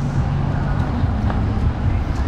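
Steady low outdoor rumble of a city street, with a few faint clicks.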